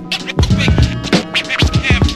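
Boom-bap hip hop beat with DJ turntable scratching: steady drum hits and bass under quick back-and-forth scratches of a vocal sample.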